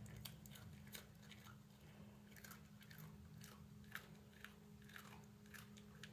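Maltese dog chewing a crunchy peanut butter cookie: a faint, irregular run of small crisp crunches and mouth clicks.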